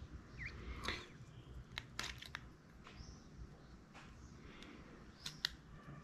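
Faint clicks and rustles of a black plastic helmet chin mount and its fabric strap being turned and fitted together by hand, with a few sharp plastic clicks about two seconds in and a louder one near the end.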